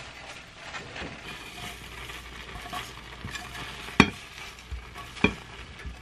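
Egg whites and broccoli sizzling in a nonstick frying pan while a silicone spatula stirs and scrapes through them, with two sharp knocks about four and five seconds in.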